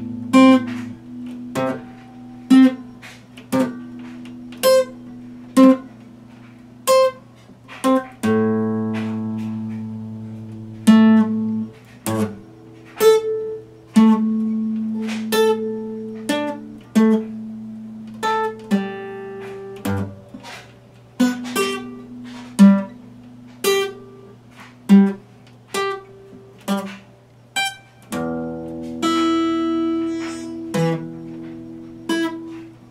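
Epiphone acoustic guitar played slowly by hand: a sharp plucked note or chord about once a second, with lower notes left ringing underneath.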